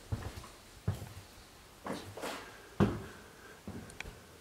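Footsteps on bare wooden floorboards, about one step a second, with the loudest step near three seconds in.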